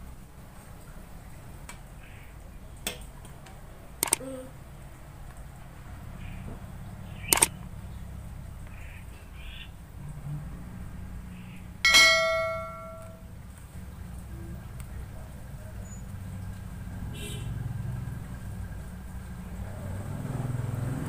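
A few light clicks and knocks from handling a small paper-and-can model boat, over a steady low hum. About twelve seconds in comes one sharp knock followed by a brief ringing tone that dies away within about a second.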